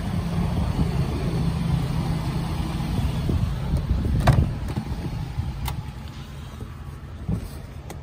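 A steady low rumble that eases off after about six seconds, with a sharp click about four seconds in as the two-door Jeep Wrangler's door latch is released.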